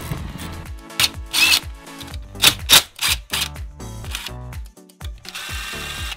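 DeWalt cordless drill-driver spinning out engine bolts: a short whine about a second in and a steadier whine near the end, between sharp metallic clicks of hand tools. Background music with a steady bass runs underneath.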